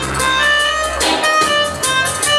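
Dub music playing loud over a sound system, with a deep, sustained bass line under held melodic notes and a steady beat.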